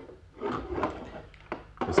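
Radio-drama sound effect of a drawer being opened and rummaged in, a short run of knocks and clicks lasting about a second, as a pistol is fetched.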